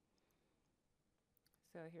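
Near silence with a few faint, short clicks about one and a half seconds in.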